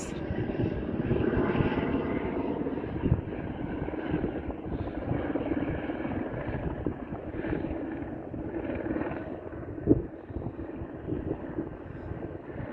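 Volcanic spatter cone erupting: a low, steady rumble with irregular knocks as gas bursts throw lava spatter out of the crater, the sharpest knock about ten seconds in.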